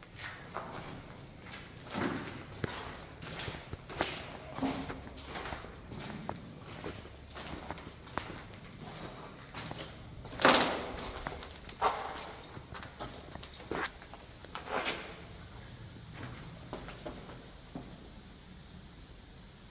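Footsteps on a debris-strewn floor, irregular, with one louder knock about ten seconds in.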